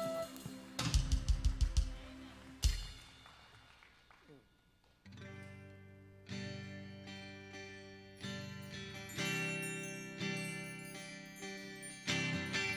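Worship band music: a song ends with a quick run of about eight drum hits and a single final hit, the sound dies away, then guitars start slow, sustained chords that change every second or so, opening the next song.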